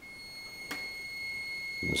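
Twin Toylander electric ride-on-toy motors driving a home-made bead roller's rollers at slow speed under foot-pedal control, giving a steady high-pitched whine. A single click about a third of the way in.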